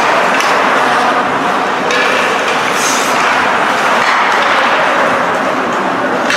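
Ice hockey rink ambience during play: a steady, loud noisy wash of the arena, with brief sharper sounds about two and three seconds in, such as skates or sticks on the ice.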